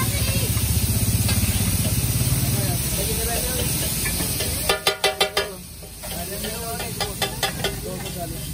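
A metal spatula scraping and chopping food on a large flat iron griddle (tawa), with sizzling. A quick run of about five sharp clanks of the spatula on the griddle comes just before five seconds in, and a few more near the end.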